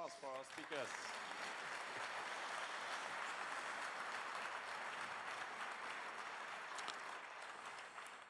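Audience applause, faint and steady, fading away near the end.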